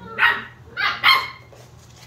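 Australian Shepherd puppies barking in play: three short, high barks in quick succession, stopping about a second and a half in.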